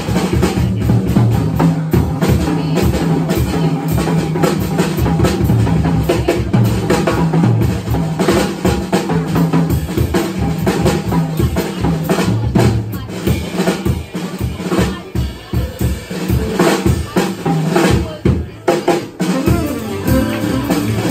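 Jazz drum kit taking a solo, with rapid snare, bass-drum and cymbal strokes and rolls, played live with the quartet.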